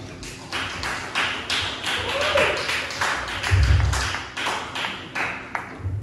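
Small audience clapping, the claps loosely spaced and separately heard, dying away just before the end. A dull low thump comes a little past halfway.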